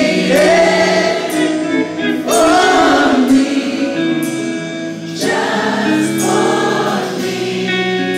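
Live gospel music: voices singing together in long held phrases over a band, with short breaks between phrases.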